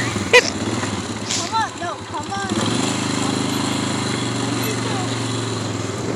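Small engine of a ride-on vehicle running steadily as it moves across grass, its hum dipping for a couple of seconds early on and then coming back even. A woman laughs near the start.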